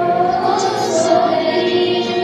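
A small mixed vocal group of mostly women's voices singing a church song together on sustained notes.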